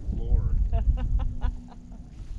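A man finishing a spoken phrase, then a short burst of laughter in about six quick, evenly spaced pulses that stops about halfway through.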